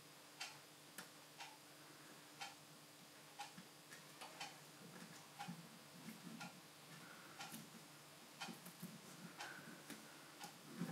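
Faint, steady ticking about once a second, like a clock in a quiet room, with a few soft scuffs of fingers pressing electrical tape onto model railway track.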